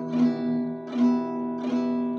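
Acoustic guitar capoed at the second fret, strummed on a D minor chord shape and left ringing. There are strums about a fifth of a second in and about a second in, and a lighter one near the end.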